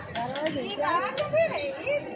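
A high-pitched voice talking in the background, unclear words among street chatter.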